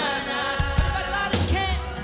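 A live band plays a song's opening with a singing voice over sparse low drum and bass hits.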